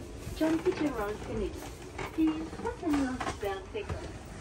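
Indistinct voices of people talking in the background, over a low rumble of room noise.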